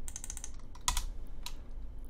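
Computer keyboard keystrokes as lines of code are deleted: a quick run of key presses at the start, then two single keystrokes about a second and a second and a half in.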